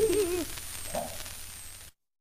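The last wavering note of two women's voices in a Namdo folk song on an old gramophone record, trailing off and dropping in pitch in the first half second, with one faint short vocal sound about a second in. Record surface hiss runs under it and fades, then cuts off abruptly just before the end.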